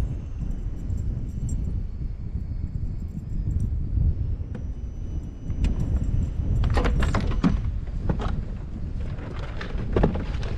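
Steady low rumble of wind on the microphone, with light clinks and rattles of tackle being handled in the kayak starting about halfway through, thickest a second or two later.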